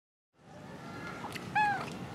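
A tabby domestic cat gives one short meow about one and a half seconds in, its pitch bending down at the end, over faint background noise.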